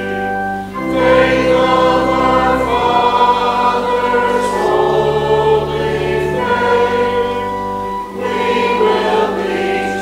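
Congregation singing a hymn together over sustained accompanying chords, the chords changing about every two seconds, with brief breaths between phrases.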